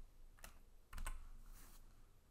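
A few faint computer keyboard clicks: one, then two close together about a second in, then a softer one, as keys are pressed to leave the slide show.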